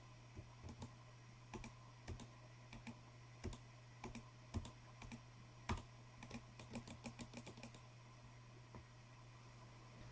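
Faint, irregular clicking of a computer mouse button and a small tactile pushbutton on a breadboard being pressed again and again, some clicks in quick pairs, stopping shortly before the end.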